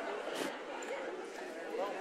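Many people talking at once in overlapping conversation, with no single voice standing out. There is a brief click about half a second in.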